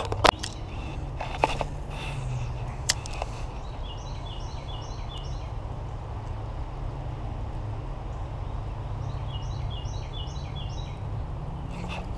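A songbird sings two short runs of quick, high repeated notes, about four seconds in and again about nine seconds in, over a steady low rumble, with a few sharp clicks near the start.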